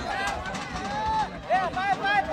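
Voices shouting at a football match over crowd chatter, with a quick run of short shouted calls near the end.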